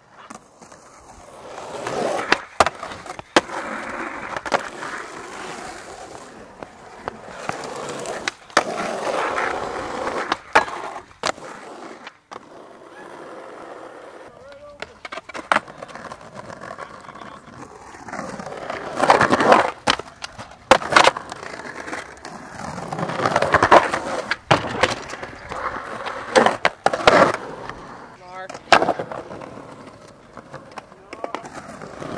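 Skateboard wheels rolling over rough pavement and concrete, rising and fading as riders pass. Over the rolling come repeated sharp wooden clacks of boards popping and landing, several close together in the second half.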